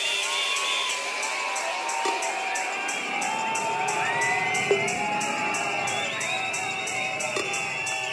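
Hardcore dance track in a breakdown with the bass and kick drum cut out, leaving a steady fast high ticking beat, while the rave crowd cheers and whistles over it.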